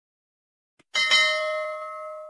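A notification bell sound effect strikes once about a second in, its tones ringing on and fading out over about a second and a half. A faint click comes just before it.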